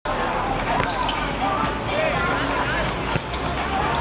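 A football being kicked and bouncing on a hard court, a few sharp thuds, with players' voices calling out over it.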